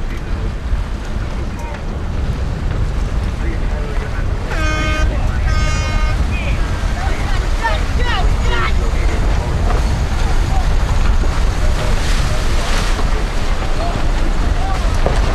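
Wind buffeting the microphone and water rushing past a racing yacht under sail, a steady low rumble throughout. A crew member's voice calls out over it: two held shouts about four to six seconds in, then a few short ones.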